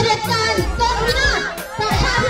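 Many high-pitched voices of a crowd calling out over one another, with a steady low hum of music underneath.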